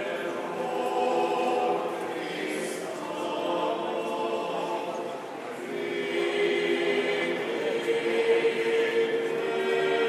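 A group of voices singing a slow chant in chorus, holding long notes, growing louder about halfway through.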